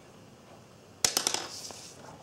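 A wooden pencil set down on a wooden tabletop: one sharp click about a second in, then a quick rattle of smaller clicks as it settles, with a brief paper rustle just after.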